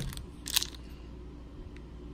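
A brief crinkle, about half a second in, from craft supplies being handled, over a low steady room hum.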